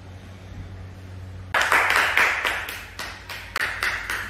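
Rapid hand clapping, about four or five claps a second, starting suddenly about a second and a half in. A low steady hum runs underneath.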